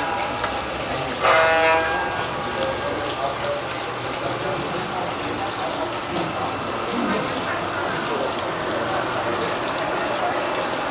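Model diesel locomotive's horn sounds once, a short chord-like blast lasting under a second about a second in, then a steady running noise as the model train comes along the track.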